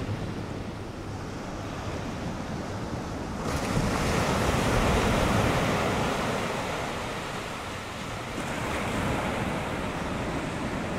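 Ocean surf: a steady wash of breaking waves that swells suddenly about three and a half seconds in, then slowly eases off.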